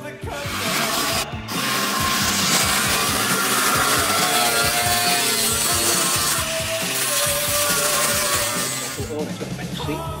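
Angle grinder grinding metal, a loud continuous hiss that starts about a second and a half in and stops just before the end, over rock music.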